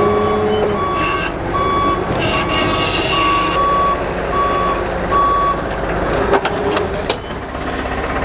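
Propane-powered Hyster 80 forklift running, its backup alarm sounding a steady series of beeps over the engine as it reverses; the beeping stops about five and a half seconds in, followed by a couple of sharp clicks near the end.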